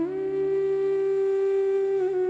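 Background music: a flute-like wind instrument holding one long steady note, stepping up into it at the start.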